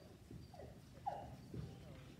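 Faint, indistinct voices in a large hall, with a brief louder sound a little over a second in.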